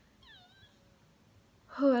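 A woman's faint, brief, high-pitched wheeze as she breathes, its pitch wavering, a sign of the shortness of breath she is struggling with. Her speech starts near the end.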